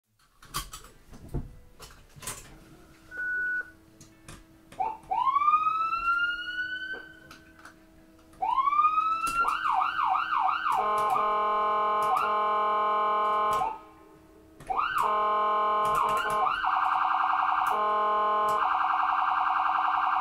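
Electronic emergency-vehicle siren cycling through its tones. After a few clicks and a short beep, it gives two rising wind-ups, then a rising wail that breaks into a fast yelp and a steady blaring tone. After a brief break, another rise leads into a rapid warble and a steady tone again.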